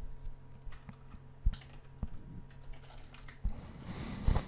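Computer keyboard typing: scattered, irregular key clicks over a low steady hum.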